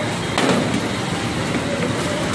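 A heavy hand tool strikes a vendor's wooden pushcart being broken up, one sharp blow about half a second in and a lighter knock near the end. Steady street and vehicle noise runs underneath.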